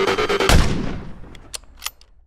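Electronic background music with a steady beat, cut off by a single loud gunshot sound effect about half a second in that rings away over the following second. A few faint clicks follow near the end.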